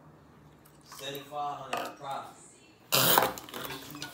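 Two girls reacting to a bite of pickle-flavoured gel: muffled humming-like voice sounds, then a sudden loud burst of noise about three seconds in as one jumps up from the table, with some clatter of spoons and plastic bowls.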